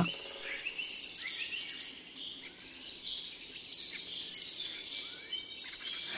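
A Eurasian wren giving rapid, high-pitched scolding alarm calls, the sign of an agitated bird.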